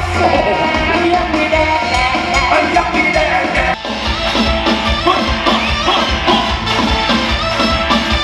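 Live band music with a woman singing over a steady drum beat. A little before halfway there is an abrupt cut, and the music jumps to another passage.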